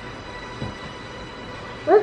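Low, steady background hum, then near the end a high-pitched voice starts, rising in pitch.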